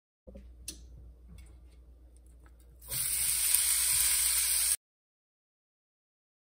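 Faint clicks and handling noise, then about three seconds in a loud, steady sizzle of bacon pieces frying in a hot pan, which cuts off abruptly after about two seconds.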